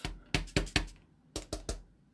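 Light, sharp taps and clicks of a rubber stamp and its block against the tabletop and pad while the stamp is being cleaned off: a quick run of about five taps in the first second, then three more.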